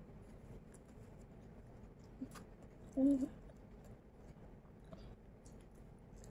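Faint chewing and small mouth clicks from children eating sushi, with one short hummed "mmm" about three seconds in.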